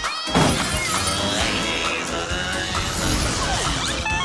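Upbeat cartoon theme music with sound effects mixed in, led by a loud crash just after the start.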